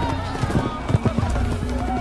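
Animal footfalls, a camel's, a short run of knocks over about a second, with one loudest near the middle. Background music and voices run underneath.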